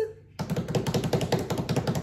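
A drum roll of rapid taps, beaten out by hands on a surface, starting about half a second in.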